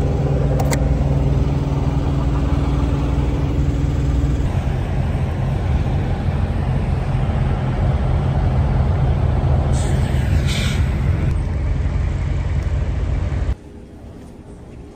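Idling diesel semi-truck engines, a loud, steady low rumble, with a few sharp clicks from the cab door about half a second in. The rumble cuts off suddenly near the end.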